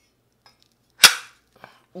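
A steel lawn mower blade snapping onto a blade balancer: one sharp snap about halfway through, followed by a faint click.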